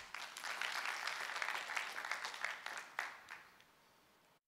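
Audience applauding: many people clapping, dense at once and dying away after about three seconds.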